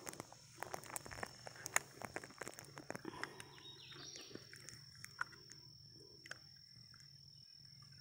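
A steady, high, single-pitched insect trill, with scattered sharp clicks and rustling over the first few seconds and a few faint chirps about three to four seconds in.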